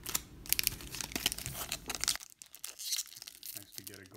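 A foil baseball card pack (2019 Topps Series 2) being torn open by hand: a dense run of sharp crackling tears, really loud, then softer scattered crinkles of the wrapper from about two seconds in.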